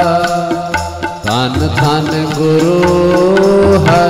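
Sikh shabad kirtan: harmoniums hold sustained notes over steady tabla strokes. After a brief dip about a second in, a voice slides upward into a held sung note.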